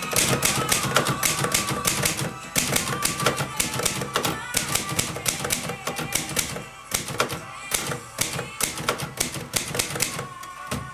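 Vintage manual typewriter being typed on: a rapid run of sharp keystrokes as the typebars strike the paper on the platen, broken by a few short pauses.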